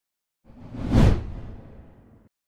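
A whoosh transition sound effect with a deep rumble underneath: it starts about half a second in, swells to a peak around one second, then fades away.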